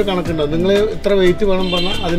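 A man talking animatedly in Malayalam, his voice rising and falling.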